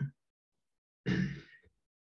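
A man sighing: a brief vocal sound right at the start, then a louder, breathy sigh about a second in that trails off.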